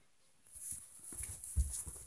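Faint handling noise: a few soft, low knocks and rustles after near silence at the start.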